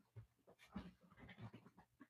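Near silence: room tone with a few faint, brief soft sounds.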